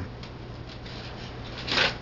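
Light rustling of a paper plate being handled over a wooden cutting board, with a short, sharper rustle near the end.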